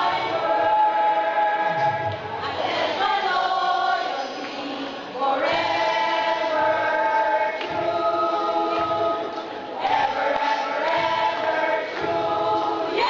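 A choir singing a hymn in long held phrases, with short breaks between them about every two to four seconds.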